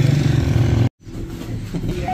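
Low, steady hum of a motor vehicle engine running close by, which cuts off suddenly about a second in; a quieter room sound follows.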